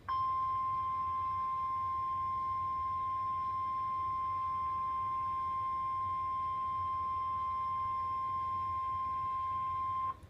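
NOAA Weather Radio 1050 Hz warning alarm tone: one steady, loud beep held for about ten seconds, then cutting off suddenly. It is the alert signal that a warning broadcast, here a tornado warning, is about to follow.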